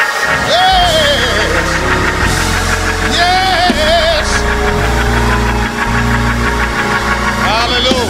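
Church praise music, held keyboard chords over a steady bass, with voices from the congregation shouting short rising-and-falling praise calls over it.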